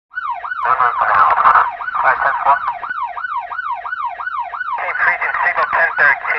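Emergency siren wailing in a fast up-and-down yelp, its pitch sweeping about three times a second. It starts abruptly, and from a little before the end a second, higher siren overlaps it.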